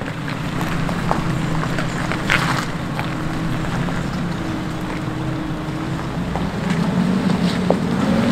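A four-wheel-drive ute's engine running steadily as it drives along a rocky dirt track, with a few stones clicking under the tyres; the engine sound grows louder near the end.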